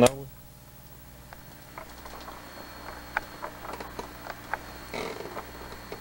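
A few faint, scattered clicks over a steady low hum as a power strip's switch is flipped and the VCR is switched on, the sharpest click about halfway through.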